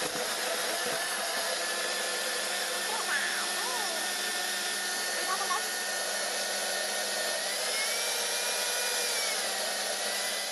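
Kenwood countertop blender running steadily, blending spinach, tomato, onion and ginger into a green purée. Its motor whine rises a little about seven and a half seconds in.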